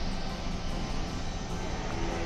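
Outdoor condenser of an 8-horsepower Tadiran mini VRF air-conditioning system running in cooling mode: a steady, quiet whir of fan and compressor.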